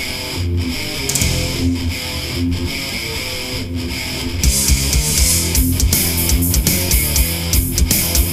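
Speed metal track: a chugging distorted electric guitar riff with bass, joined about four and a half seconds in by full drums, with steady kick hits and cymbals.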